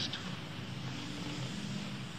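Steady background hiss with a faint hum from an old lecture tape recording, with no speech.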